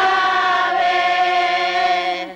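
A crowd singing a hymn together in unison, holding one long, steady note.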